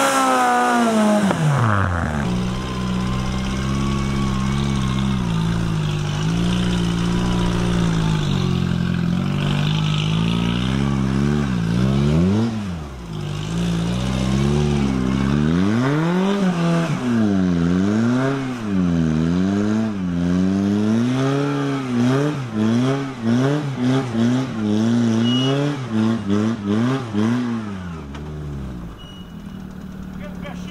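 Sporting trials car engine revving hard as the car struggles for grip on a steep hill. A high rev falls away and holds steady. From about halfway, the throttle is worked up and down in quick swells, roughly one a second, against wheelspin.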